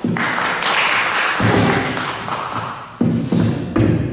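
Applause from a small audience for about three seconds. Several dull thumps from the stand microphone being handled and moved fall over it, the last near the end.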